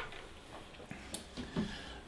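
A few faint clicks and light knocks from an RC helicopter being handled and turned over by hand.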